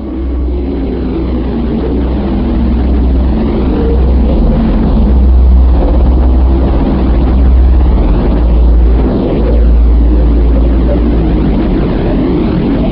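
Loud, steady deep rumble with a rushing noise above it that swells and fades slowly.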